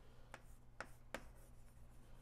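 Chalk on a blackboard: three short faint taps as the chalk strikes the board.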